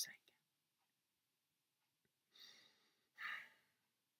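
Near silence after a spoken word, with two soft breaths from the reader, one a little after two seconds in and one a little after three.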